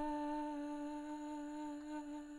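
A singer's voice holding one long, steady final note of the soprano part of a choral song, slowly getting quieter.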